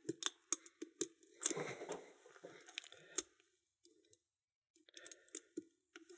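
Light metallic clicks and scrapes of a pick and a homemade wire tensioning tool working inside an Adlake railroad padlock, sparse in the middle. Nothing in the lock gives: the tensioner is held under too much tension to let the core turn.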